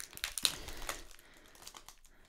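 A small paper agenda book being handled and opened, with a few light clicks and crinkles of paper and packaging. The sharpest click comes about half a second in, and faint ticks follow.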